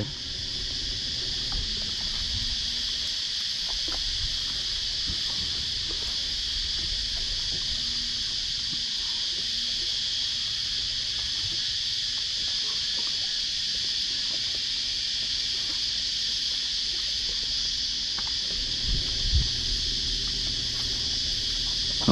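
A steady high-pitched insect chorus buzzing without a break, with a couple of faint low knocks near the end.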